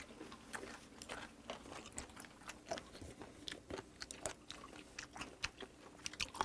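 Several people chewing raw seafood, with faint, irregular crunches and wet clicks of the mouth.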